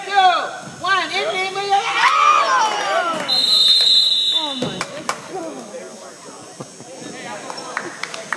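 Sneakers squeaking on the hardwood gym floor during play. A little over three seconds in, a referee's whistle blows once, for just under a second.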